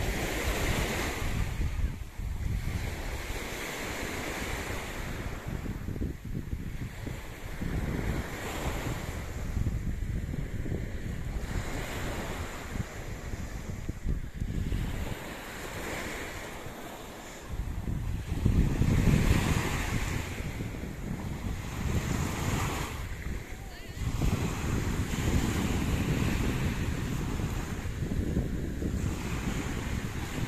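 Small sea waves washing onto a sandy beach, swelling and falling every few seconds, with wind buffeting the microphone in gusts of low rumble, heaviest about two-thirds of the way in and near the end.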